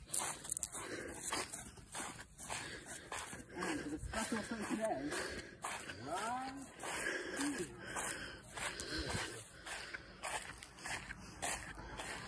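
Footsteps swishing through grass and dry fallen leaves, with a few indistinct voice sounds partway through.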